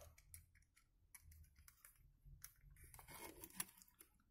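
Faint, scattered clicks and taps of a plastic half tube and bottle cap being handled and shifted on a table.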